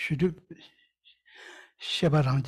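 A man's voice speaks for about half a second, then after a pause comes a short, soft breathy laugh near the end.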